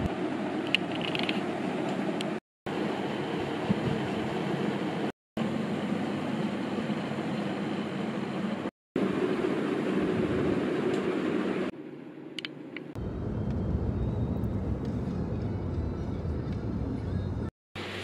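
Steady background noise with a low hum, broken by four abrupt cuts where short clips are joined.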